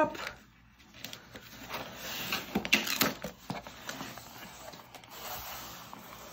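Cardboard shipping box being opened by hand: its flaps are pried up and folded back. From about a second in there is scraping and rustling of cardboard with a few sharp clicks and creaks.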